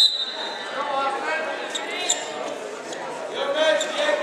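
A referee's whistle gives one short, sharp blast right at the start to restart the wrestling. Shouting voices follow in a large, echoing gym.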